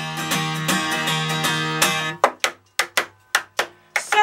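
Acoustic guitar strummed in steady chords, which break off about halfway through into a run of sharp, short percussive hits on the guitar, several a second, with near silence between them.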